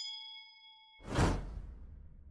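Sound effects of an animated subscribe end screen: a bright, bell-like ding that rings for about a second as the notification bell is clicked. About a second in, a whoosh with a deep boom comes in and fades away.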